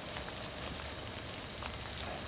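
Rainforest insect chorus: a steady high-pitched buzz over a quiet, even background, with a couple of faint ticks.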